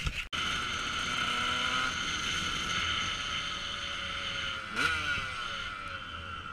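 A couple of knocks at the very start, then a motorcycle engine pulling away on the road, rising in revs for the first two seconds. About five seconds in there is a gear change, the pitch dropping and then climbing again, under steady wind noise on the helmet-mounted microphone.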